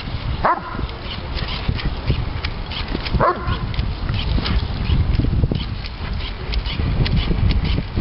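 Doberman Pinscher giving two short, high barks that fall in pitch, about half a second in and again about three seconds in: excited barking at bubbles from a bubble gun.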